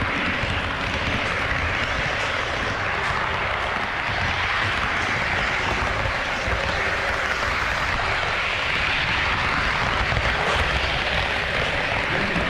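Steady running noise of an HO-scale model train rolling along its track, heard from a camera riding aboard: an even, unbroken rushing sound.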